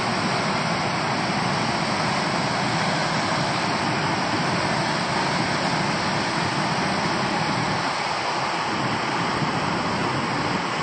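Water rushing steadily over a concrete weir spillway and churning in the pool below, a loud unbroken noise.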